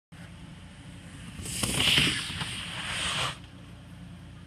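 Skis sliding fast down a plastic bristle-mat jump ramp: a loud hiss that builds, peaks and then cuts off sharply as the skier leaves the lip, under a second before the end. A steady low hum runs underneath.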